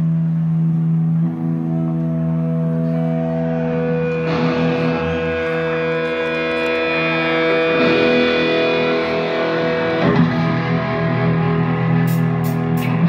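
Live electric guitars holding long, sustained chords through amplifiers with effects. The chord shifts about a third of the way in and again near two thirds, with no drums yet.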